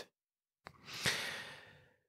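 Dead silence, then a faint click and about a second of a man's breath into a close studio microphone, fading out.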